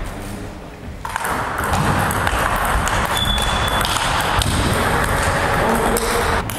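Table tennis balls clicking on bats and tables in rallies at several tables at once, many quick sharp knocks in an irregular patter. A brief high squeak comes about three seconds in.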